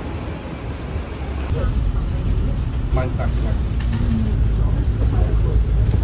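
Double-decker bus running, a steady low rumble that gets louder about a second and a half in, heard from on board the bus.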